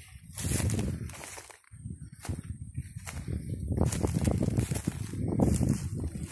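Footsteps through dry grass and leaf litter, with brush rustling against the legs, in an uneven run of crunches that starts about half a second in and pauses briefly near the two-second mark.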